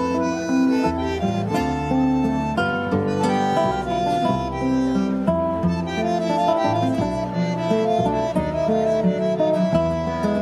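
Instrumental tango played live by a small ensemble: bandoneon with sustained reed notes, classical guitar and double bass.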